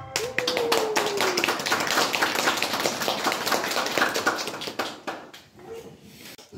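Audience applause, many hands clapping at once, dying away after about five seconds. In the first second and a half one voice calls out a long, slowly falling note over the clapping.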